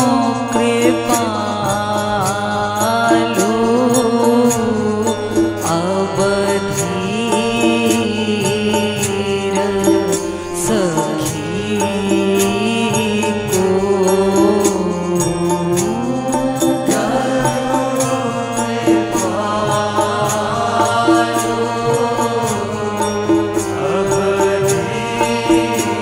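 Devotional kirtan: a woman's voice singing a bhajan melody over a steady harmonium drone, with small hand cymbals keeping a regular beat.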